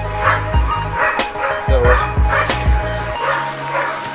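A dog barking repeatedly over background music with a low pulsing beat; the beat drops out about three seconds in.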